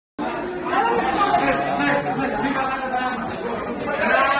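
Indistinct chatter of several voices talking at once, in a large echoing room.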